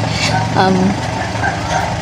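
A woman says a hesitant "um" over a steady, low, engine-like background rumble.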